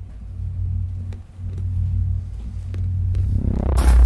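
Low, steady droning rumble of ominous background music. A loud noise swells up near the end.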